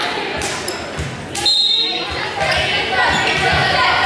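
Spectators and players talking in an echoing gymnasium during a volleyball match, with low thumps and a sharp smack about one and a half seconds in, followed by a brief high-pitched tone.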